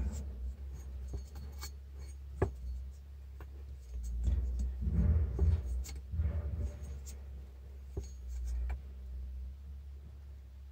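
Yamaha Wolverine CVT primary and secondary clutches and drive belt being turned slowly: soft rubbing and scraping, densest in a stretch in the middle, with a few sharp clicks.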